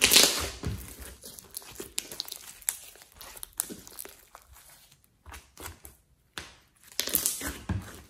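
Hands squeezing, stretching and pressing a thick glossy slime: wet squelches with many small sticky clicks and crackles. It is loudest at the start, dies down in the middle and swells again about a second before the end.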